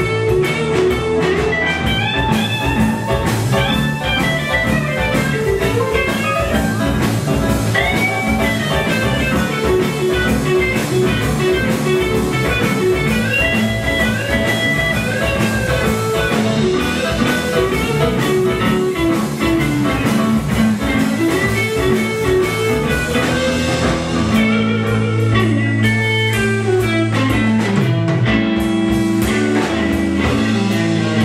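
Live blues-rock band playing an instrumental passage: an electric guitar lead with bending, gliding notes over bass guitar and drum kit. About 24 seconds in the beat drops back and long held low notes carry on.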